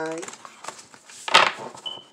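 A deck of oracle cards being shuffled by hand, with faint card clicks and one short, louder swish of the cards about halfway through.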